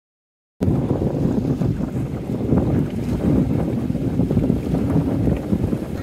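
Wind buffeting the microphone on an open ferry deck: a loud, low, gusting rush that cuts in suddenly after dead silence about half a second in.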